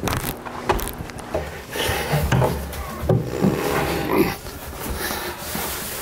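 A large wooden cabinet being carried up a staircase: irregular knocks and scraping of the wood against the stairs and banister, with a few sharp knocks in the first second and a half.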